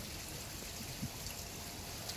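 Steady outdoor background noise, an even hiss, with one soft click about a second in.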